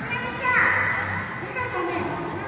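Young children's high voices calling out in a large, echoing hall, the loudest call near the start falling in pitch.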